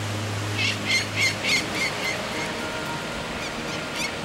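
Adult peregrine falcon giving its repeated alarm call ("cacking") at an intruder near its nest: about six calls in quick succession in the first half, over a low hum that stops partway through.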